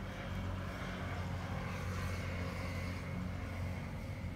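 A steady low engine hum from an unseen motor, one even tone with an overtone, over faint outdoor background noise.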